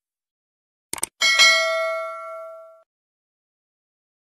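Subscribe-button sound effect: a quick double click about a second in, then a single bell ding that rings out and fades over about a second and a half.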